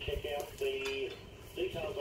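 Light metallic clinking and clicking as a steel cart handle is lined up in its bracket and a bolt is pushed through by hand.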